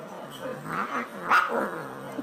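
A cat vocalizing in several drawn-out calls that rise and fall in pitch, the loudest about one and a half seconds in.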